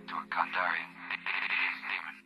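A sampled spoken voice from film dialogue, filtered so it sounds like it comes over a radio, with no words that can be made out, over a held low synth chord.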